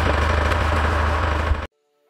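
Steady rumbling outdoor background noise, heavy in the low end, that cuts off suddenly near the end.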